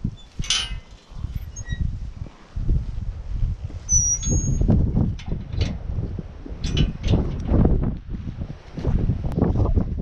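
Footsteps on outdoor concrete steps, a series of sharp scuffs and taps, under wind buffeting the camera microphone in irregular low gusts. A brief high chirp sounds about four seconds in.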